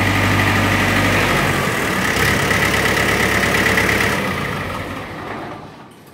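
Mahindra B-275 tractor's four-cylinder diesel engine idling. Its deep low note drops away about a second and a half in, and the rest of the running sound fades out over the last two seconds as the engine winds down to a stop.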